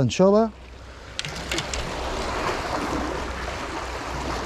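Sea water washing and surging among the concrete blocks of a breakwater, a steady rushing that builds from about a second in, with a few light clicks near its start.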